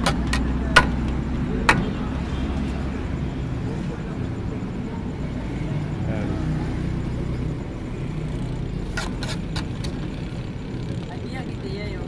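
Steel ladle clinking against an aluminium serving bowl: four sharp clinks in the first two seconds and a quick run of clinks about nine seconds in, over a steady low background rumble.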